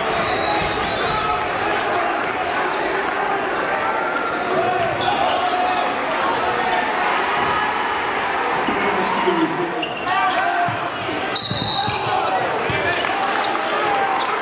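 Gym sound of a basketball game: many voices from the crowd and players, echoing in a large hall, with a basketball bouncing on the hardwood court.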